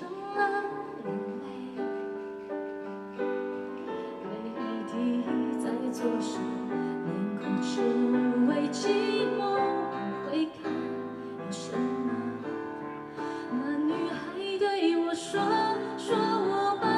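A woman singing a slow pop ballad live, accompanied by keyboard.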